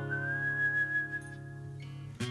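Whistling: one long held note of a whistled melody, stepping up slightly at the start and fading out a little past the middle, over acoustic guitar chords that ring on underneath.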